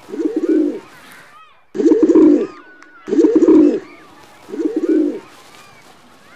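Pigeon cooing: four low coos, each under a second, spaced a second or so apart, with small birds chirping faintly in between.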